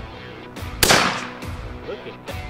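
A single shotgun shot about a second in, a sharp crack with a short decaying tail, over background music.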